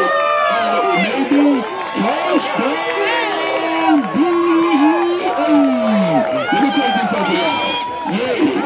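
Sideline spectators yelling and cheering after a big run on the field: many voices overlap, with long drawn-out shouts.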